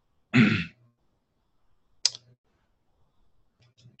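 A man briefly clears his throat, followed about two seconds in by a single sharp click.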